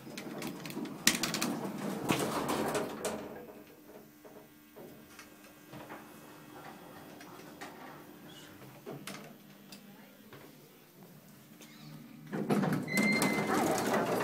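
Inside an Otis traction elevator car riding up to the lobby. Clicks and handling noise come first, then a quiet ride with a faint steady hum. Louder noise and a brief high tone come about a second from the end, as the car reaches the lobby.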